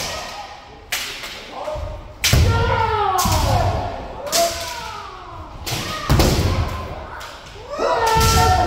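Kendo keiko: sharp cracks of bamboo shinai striking armour and heavy thuds of feet stamping on a wooden floor, about eight times, mixed with long, falling kiai shouts from several fencers. All of it echoes in a large hall.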